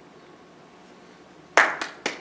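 Quiet room tone, then about one and a half seconds in a sudden short burst of clapping from the congregation, a few sharp claps.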